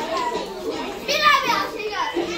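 Children's voices chattering and calling out together, with one child's loud, high-pitched shout about a second in.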